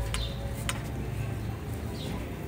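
Two sharp clicks about half a second apart as a kitchen knife pokes into a large aluminium pot of boiling corn, over a steady low rumble.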